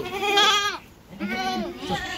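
A goat kid bleating twice, two wavering calls of under a second each, the second starting about a second and a quarter in.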